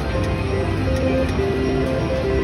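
Slot machine playing its melodic spin tune while the reels spin and come to a stop.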